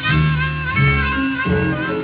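Country blues instrumental passage: acoustic guitar thumping out a repeated bass figure, with harmonica playing along.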